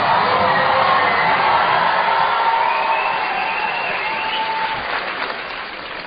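Large studio audience applauding and cheering, with shouts over the clapping, easing off slightly toward the end.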